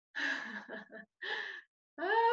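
A woman's short breathy gasps, unvoiced and airy: a quick cluster in the first second, then one more just after halfway.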